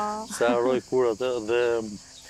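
A man speaking in an interview, his voice rising and falling and pausing near the end, over a faint steady high-pitched hiss.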